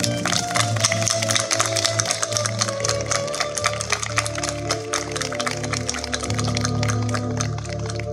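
Violin and Korg Pa700 keyboard playing slow music with held notes, while a small audience claps.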